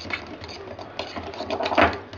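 Electric hand mixer running, its twin whisk beaters whipping fresh cream in a glass bowl, with a steady motor hum and the beaters rattling. It gets louder briefly near the end.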